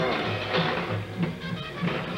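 Music playing in the room, with a bass line that moves in short, evenly spaced notes under higher parts.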